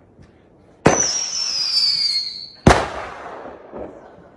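A whistling firework: a sharp pop about a second in, a high whistle falling slowly in pitch for nearly two seconds, then a loud bang with a fading tail.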